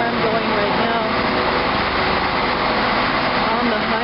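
Steady, loud whirring hum from a stationary TGV high-speed train's power car, with voices of people nearby.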